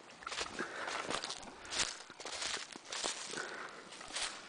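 Footsteps on frozen, frost-covered ground and leaf litter: an irregular series of steps, the loudest a little under two seconds in.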